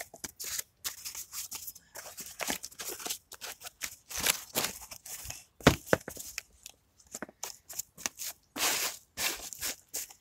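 Cardboard being torn into pieces by hand and pressed into place, a run of irregular tearing and crackling strokes with a sharper, louder one about halfway through.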